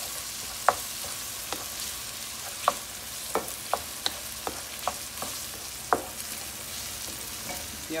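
Diced bell peppers, garlic and sofrito sizzling in butter in a frying pan, with a steady hiss, while being stirred; the stirring utensil knocks against the pan about ten times.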